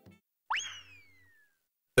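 A cartoon-style comedy sound effect: a single tone that swoops quickly up about half a second in, then glides slowly down and fades over about a second.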